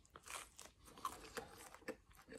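A bite into a crisp-crusted Sicilian pizza slice, then faint chewing with a few soft crunches.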